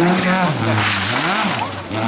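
A Volvo 240-series rally car's engine revving hard as the car slides on loose gravel. The pitch drops about half a second in, then swells and falls again a second later.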